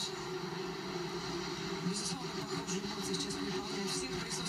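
Indistinct voices and crowd noise from a television broadcast, heard through the TV's speaker.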